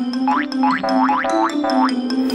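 Upbeat children's cartoon music with a light steady beat, overlaid from about a third of a second in by a quick run of rising, springy 'boing'-like sound effects, several a second, typical of a cartoon character zipping out of the scene.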